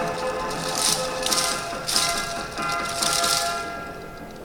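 Yosakoi dance music with the clatter of many wooden naruko clappers shaken in unison by the dancers, coming in repeated bursts about every half second or so. The sound drops away in the last half second.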